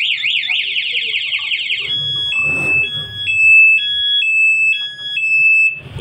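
Aftermarket motorcycle alarm siren going off on a Honda Beat, set off by switching on the ignition while the alarm is armed. It begins with a fast up-and-down warbling wail, then changes about two seconds in to a two-tone high-low alternation, roughly two changes a second, and stops just before the end.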